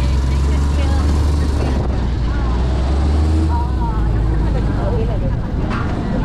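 Engine of an open-sided shuttle vehicle running at low speed, heard from inside the vehicle, with people talking faintly in the background. The engine's low hum weakens about three and a half seconds in.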